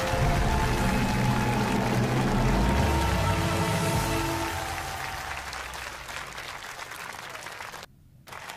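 Television show music over a studio audience's applause, both fading away over the second half and cutting out briefly near the end.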